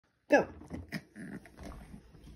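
Yorkshire terrier vocalizing: one short, loud sound falling in pitch just after the start, then several softer short sounds while it mouths a spiky toy ball.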